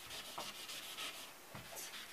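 An eraser rubbing back and forth over chalk on a chalkboard wall: a soft scratchy hiss in quick repeated strokes.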